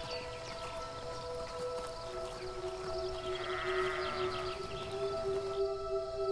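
Quiet background music of long held notes, with a brief wavering swell of higher notes about midway.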